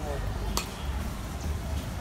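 Outdoor background noise: a steady low rumble, with a brief voice at the very start and one sharp click about half a second in.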